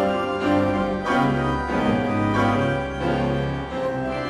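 Church organ and grand piano playing together: sustained organ chords over a deep bass line, with piano notes and chords struck on top.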